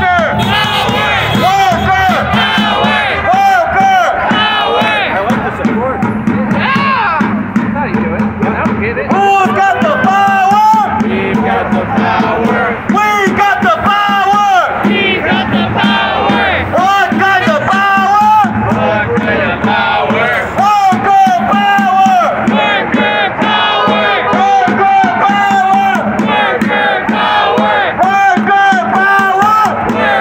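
Group of protesters chanting a short slogan over and over in a steady rhythm, led through a megaphone.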